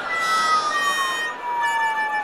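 Comic sound effect: a whistle-like tone sliding slowly down in pitch over a couple of steady higher tones, stopping near the end.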